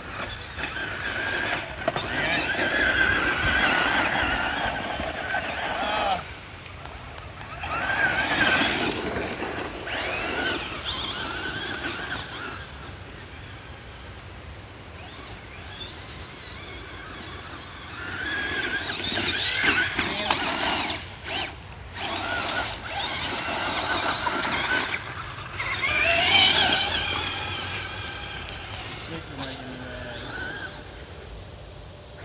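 Traxxas Slash electric RC truck's motor and drivetrain whining in repeated bursts of a few seconds, the pitch rising and falling with the throttle, as the truck labours up a dirt slope.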